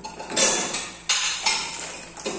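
A frying pan set down on the metal burner grate of a gas stove: two clattering knocks, about half a second and a second in.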